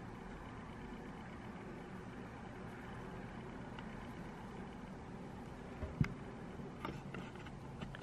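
Steady low background hum and hiss, with a single sharp click about six seconds in and a few faint ticks shortly after.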